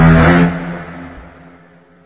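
An edited-in sound effect: a loud, buzzy pitched tone that starts suddenly and fades away over about two seconds.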